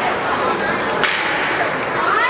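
Ice hockey play in a rink: a sharp crack of a stick hitting the puck about a second in, over the steady chatter of spectators.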